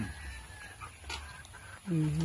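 Chickens clucking faintly, a few thin high calls in the first second or so.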